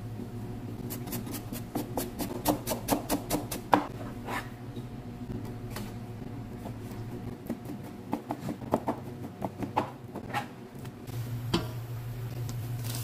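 Knife chopping parsley on a plastic cutting board: a quick run of knocks, about five a second, for a few seconds, then scattered lighter taps. A steady low hum runs underneath and grows louder near the end.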